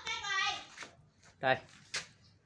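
Voices: a high voice trailing off in the first second, then a brief "ừ" from the man, then a single sharp click just before the end.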